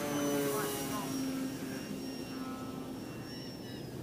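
Durafly Tundra RC plane's electric motor and propeller in flight, a steady hum with a thin high whine that slowly falls in pitch and fades as the plane flies away.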